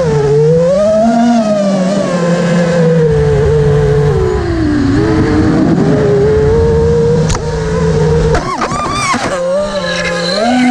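FPV quadcopter's brushless motors and propellers whining, heard close from the GoPro mounted on the drone. The pitch rises and falls with the throttle, and near the end it jumps rapidly up and down.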